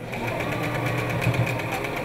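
Electric domestic sewing machine running steadily, the needle stitching rapidly through fabric.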